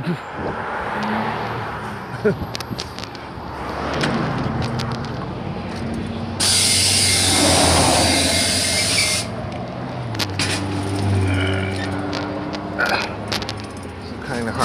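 2018 Gillig transit bus pulling up: its engine running steadily, then a loud hiss of compressed air from its air brakes for about three seconds that cuts off suddenly, and the engine idling afterwards with a few clicks near the end.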